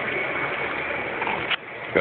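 A small knife blade scraping along the sealed seam of a cardboard trading-card box, ending in a single sharp click about one and a half seconds in as the seal gives way.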